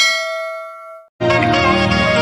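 A single bell-like ding, the notification-bell sound effect of a subscribe-button animation, rings out and fades over about a second. Music starts just over a second in.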